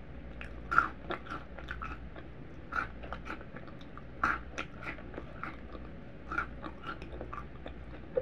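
Cap'n Crunch cereal pieces bitten and chewed close to the microphone: four sharp crunches (about a second in, near three seconds, just after four seconds and past six seconds), with lighter crackling chews between.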